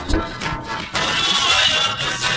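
Nigerian highlife band music playing, with a steady drum beat and bright, jangling percussion.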